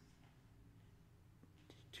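Near silence: room tone with a faint low steady hum.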